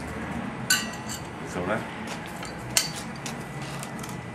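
Metal tools being handled, with two sharp metallic clinks that ring briefly, one about a second in and a louder one near three seconds, and a few softer knocks in between.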